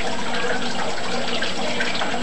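Pellet stove's fans running: a steady rushing of air with a faint low hum, during an attempt to get the pellets in the burn pot to ignite.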